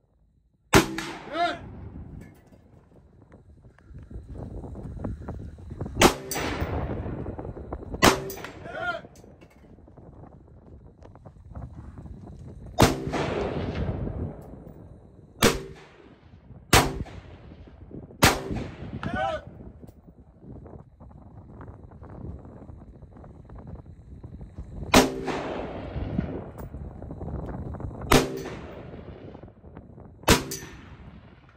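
AR-style rifle fired one shot at a time, about nine shots at irregular gaps of one to several seconds, each trailing off in a long echo. Three of the shots are followed about half a second later by a short metallic ring, the sound of a steel target being hit downrange.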